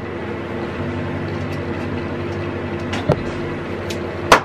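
A steady background hum carrying a few faint steady tones, with a single short knock about three seconds in.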